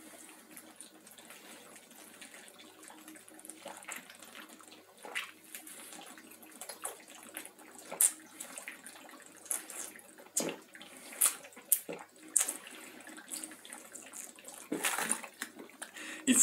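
Icy, slushy water being drunk straight from a plastic bottle: faint gulping with water and ice sloshing inside the bottle and scattered sharp clicks, mostly in the second half. A louder noisy burst comes near the end.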